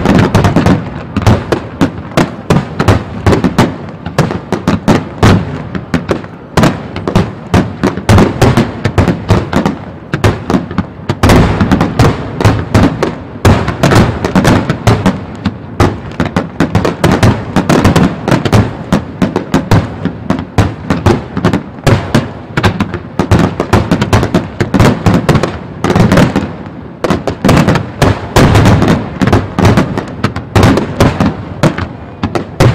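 Starmine fireworks barrage: aerial shells bursting in rapid succession, several sharp bangs a second overlapping into a continuous crackling volley, with only brief let-ups.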